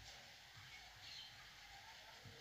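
Near silence: faint room tone, with faint soft strokes of a marker writing on a whiteboard.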